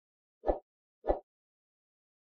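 Two short, soft pop sound effects about 0.6 s apart, from an animated subscribe-and-like end-screen graphic.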